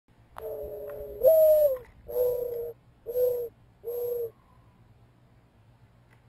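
Mourning dove giving its cooing song. A low first note swings up into a higher, falling coo, then come three long, level coos about a second apart.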